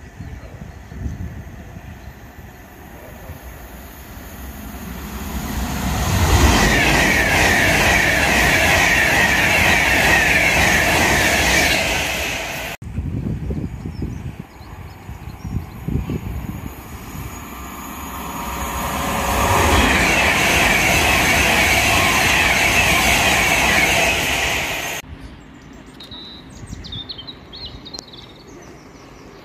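Two trains passing at speed on the main line, one after the other. Each rises over a few seconds from a distant rumble to a loud rush of wheels on rail, holds for about six seconds, then cuts off suddenly.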